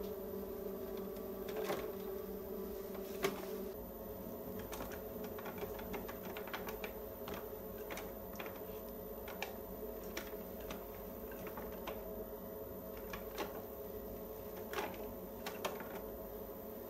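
Electric potter's wheel humming steadily while a metal trimming tool scrapes and clicks against a leather-hard clay bowl, shaving off curls of clay. The wheel's hum shifts up in pitch about four seconds in.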